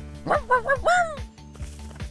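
Cartoon dog barking in a quick run of about five short, high barks, the last a little longer, over background music.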